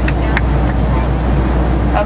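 Steady low drone of a Boeing 737 cabin in flight, engine and airflow noise, with two sharp clicks near the start.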